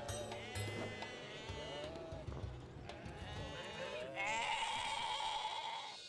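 Cartoon sheep bleating: several short wavering bleats in turn, then a longer, louder bleat near the end.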